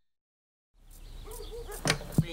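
Silence, then a faint low hum with some background noise starts about three quarters of a second in, and a single short, sharp hit sounds near the end.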